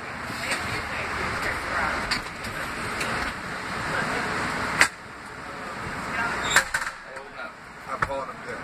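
Ambulance stretcher being pushed into the back of an ambulance: a steady rolling rumble and rattle, a sharp clack just under five seconds in, and another knock a couple of seconds later.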